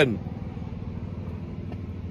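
Steady low background rumble outdoors, with no distinct event in it; the last syllable of a man's word is heard at the very start.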